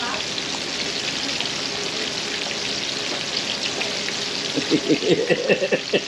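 Battered pork chops shallow-frying in hot canola oil: a steady sizzle with fine crackling. A voice comes in near the end.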